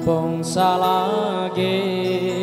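A man singing a Manggarai song into a microphone over amplified backing music, his voice gliding between held notes.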